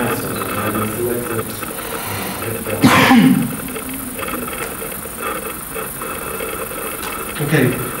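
Low, indistinct talk in a room full of people, with one loud, short cough about three seconds in.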